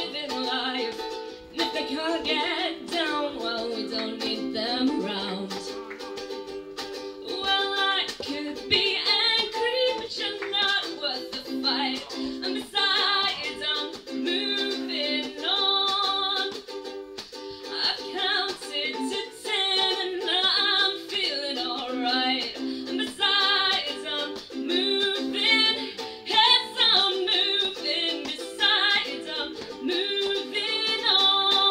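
Ukulele strummed in chords with a woman singing over it.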